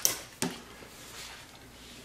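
Two short clicks about half a second apart, from handling a continuity tester and its probe lead at the switch.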